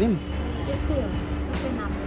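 A voice trailing off, then a few faint words over a steady low hum.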